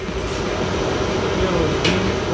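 Steady low background rumble, with a short sharp click near the end.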